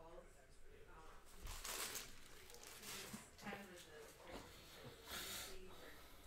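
Faint swish of trading cards sliding against each other as a stack is sorted by hand, twice: about a second and a half in and again near the end, under a faint murmur of speech.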